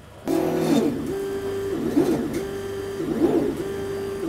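Desktop laser cutter starting a cutting job: the gantry motors whine at a steady pitch while the head travels. About every second and a quarter the pitch dips and rises again as the head stops and sets off between short cuts, over a low steady hum.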